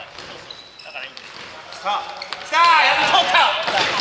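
A futsal ball being kicked and bouncing on a gym's wooden floor in a few sharp knocks. From about two and a half seconds in, several men shout loudly, echoing in the hall.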